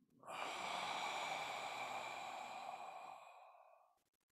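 A man's long, deep breath out, one of a slow set of three deep breaths: it starts strongly about a quarter second in and fades away over some three and a half seconds.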